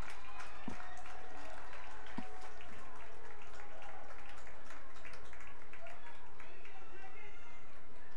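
Field ambience at a soccer game: distant players' voices and shouts over a steady low hum, with two faint thuds in the first few seconds.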